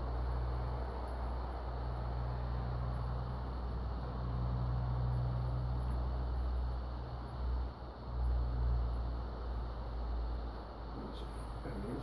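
A steady low hum with a hiss over it, dipping briefly about eight seconds in.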